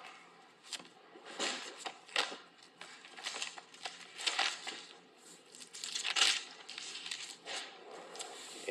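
Paper Bible pages being leafed through and rustling in irregular short bursts, the loudest a little after six seconds in.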